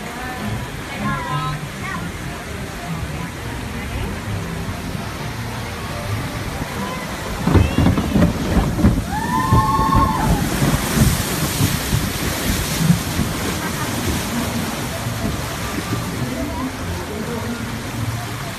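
Log flume boat running through its water channel with sloshing and rumbling. About halfway through, as the log drops, a rider gives a short cry, and a few seconds of heavy hissing water spray follow the splash-down.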